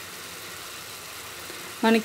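Steady sizzling hiss of a grated coconut and jaggery mixture cooking in an aluminium pan over a medium flame.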